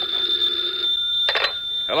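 Telephone bell ringing as a radio-drama sound effect, one ring that stops about a second in, followed by a short sharp burst a little later.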